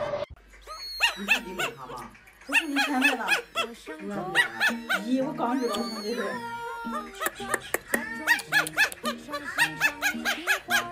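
Music with a high-pitched, squeaky voice in short, quick syllables over a stepping bass line, starting about a second in after a brief gap.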